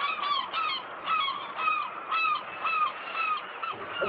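Seagulls calling: a run of short, repeated calls, about two a second, over a steady background hiss.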